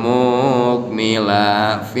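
A man's voice chanting Arabic text from a kitab in a drawn-out, sing-song recitation, with long held notes and short breaks just before a second in and near the end.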